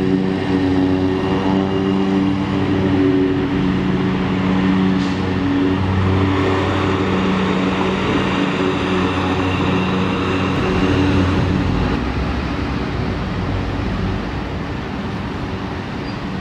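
City street traffic: a motor vehicle engine's steady low hum, with road noise swelling in the middle and easing off near the end.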